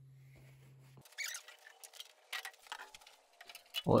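A faint steady hum for about a second, then irregular small clicks, scrapes and knocks of something being handled, until a man starts speaking near the end.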